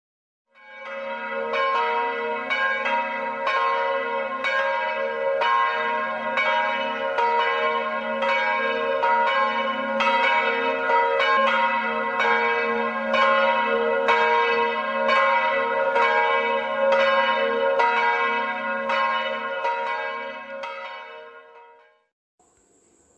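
Church bells ringing a steady peal, a stroke about every half second over a sustained hum, fading in at the start and fading out near the end.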